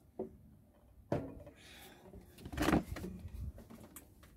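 Handling noises: knocks and scrapes as a glass drink jar is set down and an acoustic guitar is shifted back onto the lap. The loudest is a rough scrape about two and a half seconds in, and the strings give a faint, brief ring when bumped.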